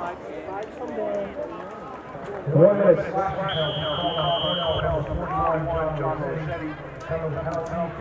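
Men's voices talking. About halfway through comes a single steady, high whistle blast lasting just over a second.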